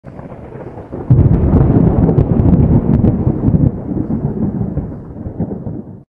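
Thunder sound effect: a low rolling rumble with crackles, coming in loud about a second in and fading away toward the end.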